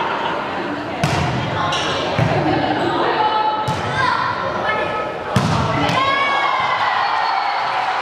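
Volleyball struck during a rally: four or five sharp hits on the ball that echo around the sports hall, the loudest about five seconds in. Players call out between the hits.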